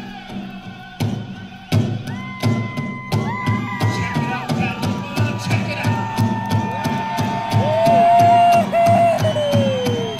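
Powwow drum group playing a fancy shawl competition song: a big drum struck in a steady, driving beat, with high-pitched group singing in long held notes that slide down at their ends. The drumming grows louder with two hard strikes about a second in.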